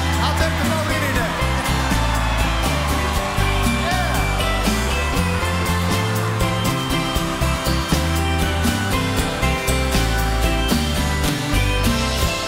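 Live band playing an instrumental stretch of a country-rock song, with strummed acoustic twelve-string guitar over steady bass and drums. A steady wash of crowd cheering runs underneath.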